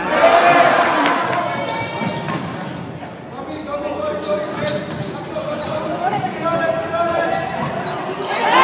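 Live basketball game sound from the court: a ball bouncing on the floor amid players' and crowd voices echoing in a large sports hall. It starts abruptly.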